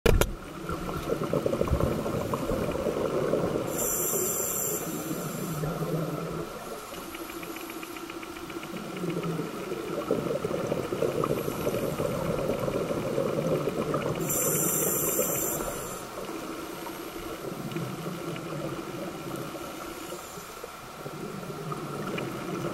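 Underwater sound picked up through a camera housing, with a scuba diver's regulator breathing: a brief hiss about four seconds in and again about fourteen seconds in, over steady bubbling and crackling.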